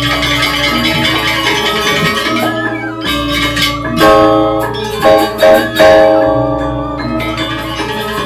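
Balinese gamelan music accompanying the Rejang dance: bronze metallophones play a ringing, interlocking melody, with several loud struck accents in the second half.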